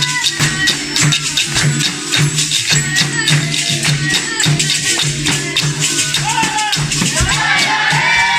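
Capoeira bateria playing a steady rhythm: berimbaus with their caxixi rattles, an atabaque drum and the group's handclaps. Voices come in singing near the end.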